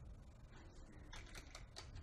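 Faint typing on a computer keyboard: a few soft key clicks, most of them in the second half.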